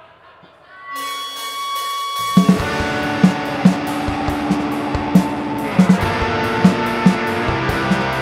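Live rock band starting a song: a held note rings out about a second in, then drums and electric guitars come in together just after two seconds and play on loudly, with hard drum hits.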